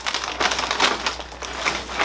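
Crunchy chickpea puffs being chewed: a quick, irregular run of crunches.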